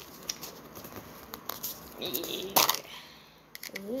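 Plastic toy capsule being twisted and prised open by hand: scattered small clicks and crinkles, with one sharp snap about two and a half seconds in.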